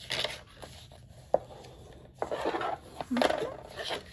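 Paper rubbing and sliding against a plastic scoring board as a folded sheet is pressed and creased by hand, in three short rustling strokes. There is a single sharp click about a third of the way in.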